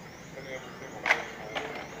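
Metal shopping cart being pushed across a store floor, with a steady rolling hum and a sharp click about a second in.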